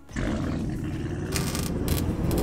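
End-card logo sound effect. A loud roar cuts in abruptly just after the start and keeps building, with two short bursts of hiss in the second half.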